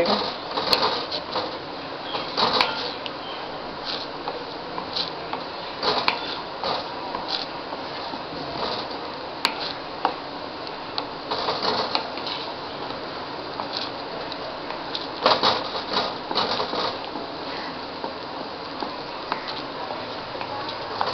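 A spoon scraping and knocking against a kadai as thickening papaya halva is stirred while it cooks down until dry. The scrapes are short and irregular over a steady hiss.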